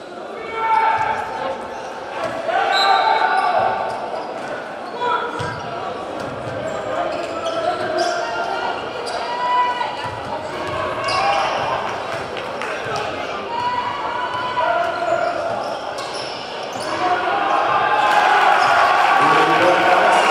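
A basketball being dribbled on a hardwood court, bouncing repeatedly, with voices calling and shouting around the gym. The voices grow louder near the end.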